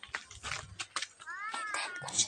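A cat meowing once near the end, one drawn-out call that rises and then falls in pitch, after a few light knocks.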